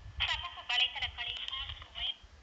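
A quiet voice speaking over a telephone line, with the thin, narrow sound of a recorded phone call, starting about a quarter second in.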